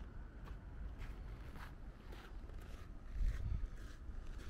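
Footsteps crunching on packed snow and ice at a walking pace, about two a second, over wind buffeting the microphone in a low rumble that swells loudest a little after three seconds in.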